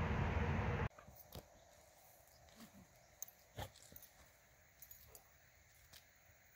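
Steady wind rushing on the microphone cuts off abruptly about a second in. Then comes a quiet stretch of faint scattered ticks and small soft noises from a dog lying in sand, with a brief low whine near the middle.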